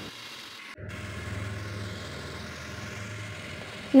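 Electric motor of an Omniblade BL100 food processor running steadily in its blender jar as it grinds a wet spice paste, a low hum with a brief break about a second in.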